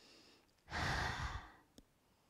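A woman's audible sigh, one long breathy exhale out through the mouth about a second in, as she hangs forward in a ragdoll fold. A faint click follows near the end.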